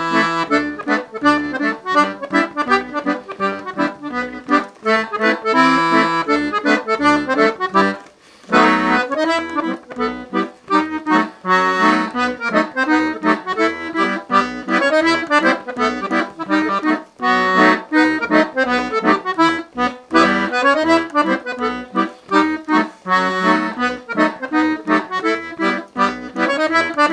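Five-row chromatic button accordion playing a jenkka, the Finnish schottische: a melody over a steady, rhythmic bass-and-chord accompaniment, with a short break about eight seconds in.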